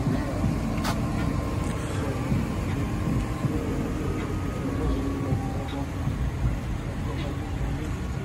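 Cars running on a street, a steady low rumble, with indistinct voices talking in the background and a sharp click about a second in.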